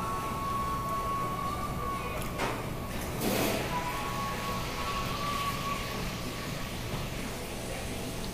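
Restaurant room sound: a steady low hum with faint held tones that come and go. A brief, louder noisy rustle or crunch comes just past three seconds in.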